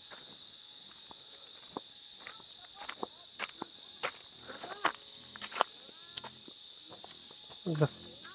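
A steady high-pitched drone of insects, with scattered footsteps on a dirt path and faint distant voices in the second half.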